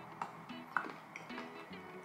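Quiet background music with soft plucked guitar-like notes, and a few faint clicks.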